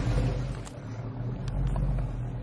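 Swapped 6.0-litre LS V8 in a 1988 Monte Carlo idling with a low, steady exhaust note.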